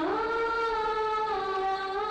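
Background film music: one long held melodic note that glides up at the start and steps down slightly partway through.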